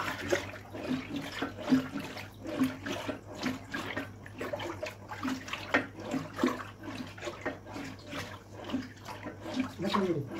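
Thin milk and rice-flour mixture sloshing in a large aluminium pot as it is stirred continuously with a wooden spatula, in quick strokes about two a second. A steady low hum runs underneath.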